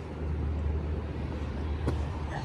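Low, steady rumble of wind on the microphone, with one short click near the end.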